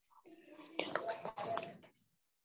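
A faint, soft voice, whisper-like and broken, with a few small clicks among it.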